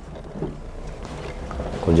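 Low, steady rumble of a car's engine and cabin noise heard from inside the car during a pause in speech; a man starts speaking again near the end.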